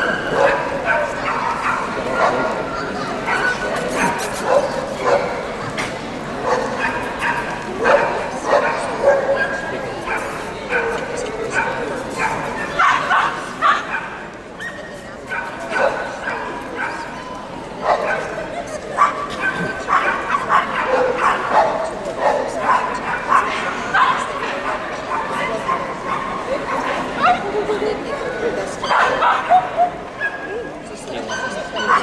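Dogs yapping and barking again and again, short high yips coming every second or so, over people's chatter.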